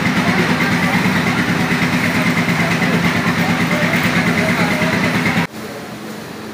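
A small engine idling steadily with a fast, even flutter, then stopping abruptly near the end.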